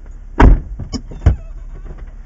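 Three sharp knocks inside a stopped off-road Jeep, the first about half a second in and the loudest, the last two close together about a second in, over a steady low rumble.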